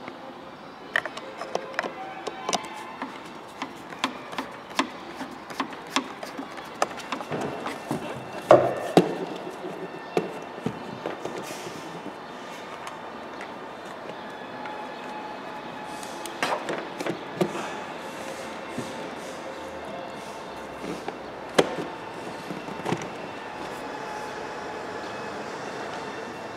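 Irregular clicks, knocks and clatter of a hand tool and plastic parts being handled and fitted in the cowl area under the bonnet of a BMW 5 Series, with the busiest knocking about eight to nine seconds in.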